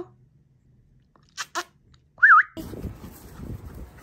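A small dog whining: two short whimpers about halfway through, then a brief high wavering whine, the loudest sound. Near the end a steady low outdoor rumble and rustle takes over.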